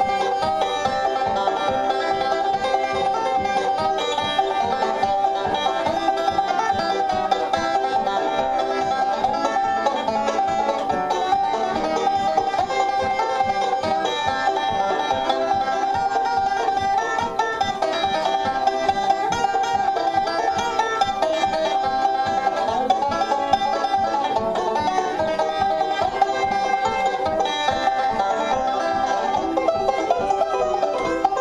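Live acoustic bluegrass instrumental: a banjo picking a fast, continuous run of notes with a fiddle playing along, without a break.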